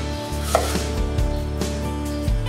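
Kitchen knife slicing a red onion on a wooden chopping board: several sharp chopping strokes as the blade goes through onto the board, over steady background music.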